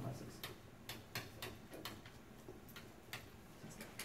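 Marker tip ticking against a whiteboard as figures are hand-written: a string of short, irregular clicks, about two or three a second.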